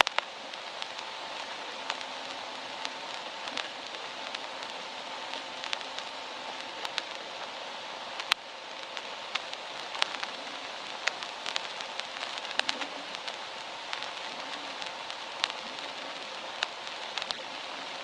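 Old-record surface noise: a steady hiss with scattered random clicks and pops.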